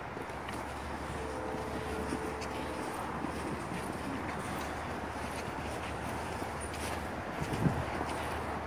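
Steady outdoor background noise with faint footsteps on snow as a person walks.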